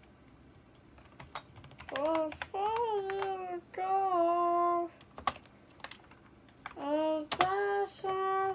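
A boy's voice singing short wordless phrases in held, stepped notes, about two seconds in and again near the end, over scattered clicks of typing on a computer keyboard.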